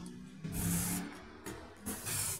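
Aerosol spray-paint can giving one short hiss about half a second in, lasting under a second, over a steady low hum.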